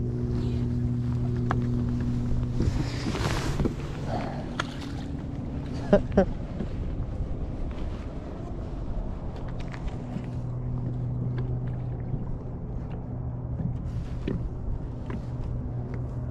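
Electric bow-mount trolling motor humming steadily. It cuts off about two and a half seconds in and starts again about ten seconds in. A brief rush of noise follows soon after the first stop, and two sharp knocks come about six seconds in.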